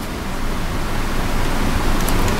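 Steady, even hiss of background noise with no speech and no distinct clicks.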